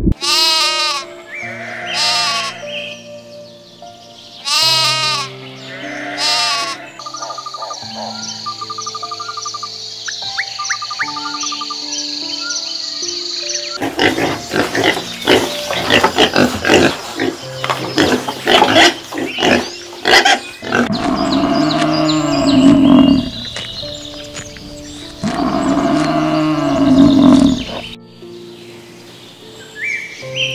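Background music with animal calls over it. About halfway in, a herd of domestic pigs calls repeatedly, with two loud drawn-out calls near the end.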